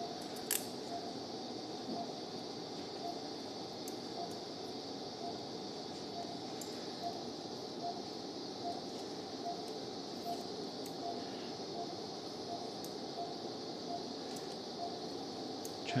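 Steady operating-room background hum with a faint, evenly paced beep about every two-thirds of a second, the pulse tone of an anaesthesia patient monitor. A few light metallic clicks come from surgical instruments as the skin is sutured.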